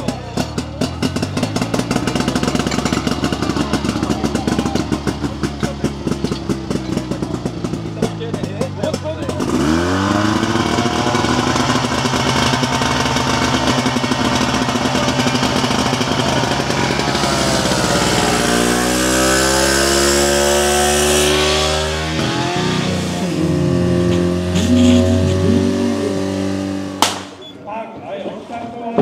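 Small engine of a portable fire pump running with a fast pulsing beat, then revving up sharply about a third of the way in and holding at high speed as the pump draws and delivers water. Around two thirds of the way in its pitch sags and climbs back.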